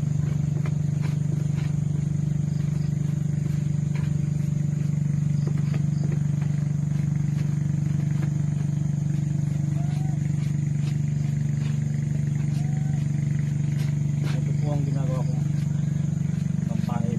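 A loud, steady low machine hum runs without a break, with faint scattered clicks over it.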